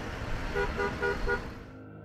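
Road traffic with a car horn sounding a quick run of about six short beeps, starting about half a second in; the traffic noise fades out near the end.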